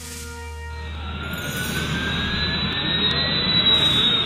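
Sci-fi jet-engine sound effect of a Dalek hoverbout flying out of a launch bay: an engine noise that swells from about a second in, with a slowly rising whine, over background music.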